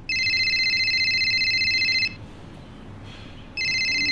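Telephone ringing: a steady electronic ring of about two seconds, a pause of about a second and a half, then a second ring starting near the end.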